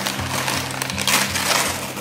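Shiny metallic wrapping paper crinkling and tearing as a present is unwrapped, in a few rustling bursts, over background music with a steady beat.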